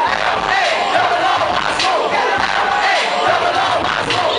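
A dense crowd shouting and cheering loudly without pause, many voices yelling together to egg on a dancer in the middle of the circle.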